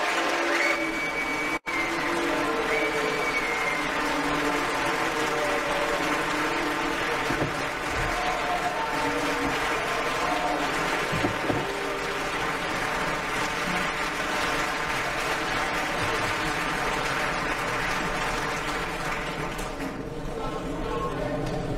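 Members of the European Parliament applauding in the large plenary chamber: steady, sustained clapping from many people at the close of a speech. There is a momentary break in the sound about one and a half seconds in.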